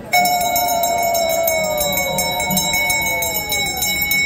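Temple bells start ringing suddenly, fast and continuously: a steady high ring over rapid, even strokes. Beneath them, a lower sustained tone slides slowly downward.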